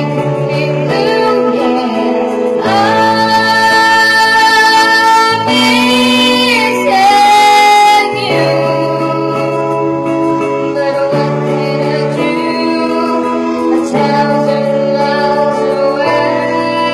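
A woman singing into a microphone over instrumental backing music, in long held notes. The loudest moment is a high note held about halfway through, which ends abruptly near the middle.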